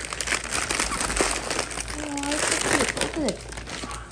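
Gift-wrapping paper crinkling and rustling continuously as a child pulls it off a boxed toy, with a few short voice sounds in the middle.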